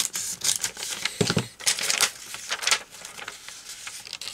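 Sheets of craft paper rustling and sliding as they are picked up and laid down on a table, in several short spells, the loudest a little after a second in.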